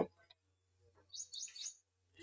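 A bird chirping faintly: a quick run of four or five short, high chirps about a second in.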